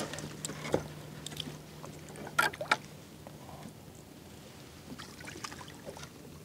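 A landing net working in the water beside a small boat as a squid is netted, with a few sharp knocks against the hull, two of them close together about halfway through. A low steady hum underneath fades out midway.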